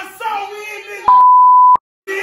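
Loud excited voices, then about a second in a loud steady single-pitch bleep, a censor tone laid over the speech, lasting well under a second and cutting off abruptly.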